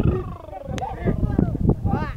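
Men's drawn-out calls driving oxen over a threshing floor: one long cry falling in pitch through the first second, then shorter shouts and a few sharp knocks.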